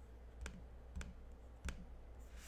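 Three short, sharp clicks at a computer, about half a second apart, over a faint steady low hum.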